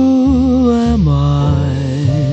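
Soft male jazz vocal holding a long note that wavers with vibrato, then sliding down to a lower note about halfway through, over piano and bass accompaniment.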